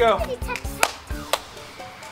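A rubber playground ball served into play, landing with two sharp slaps about half a second apart, roughly a second in, over background music.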